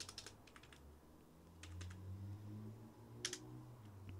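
Faint computer keyboard keystrokes: a few short clusters of key clicks as two forward slashes and line breaks are typed, over a faint low hum.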